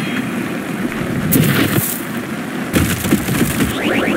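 Heavy rain pouring with low rumbles like thunder, and two heavy impacts, one about a third of the way in and another past the middle.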